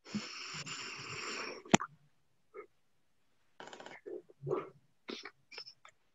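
Noise picked up by an open microphone on a video call: a hissing rush for over a second, cut off by a sharp click, then several short scattered noises.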